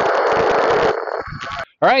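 Burst of static hiss from a Kenwood TM-V7 FM transceiver's speaker, loud for about a second and then lower until it stops: the squelch tail as a transmission ends.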